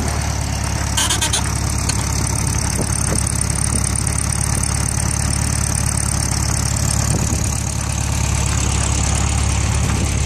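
1973 VW Beetle's air-cooled flat-four engine idling steadily, with a brief click about a second in.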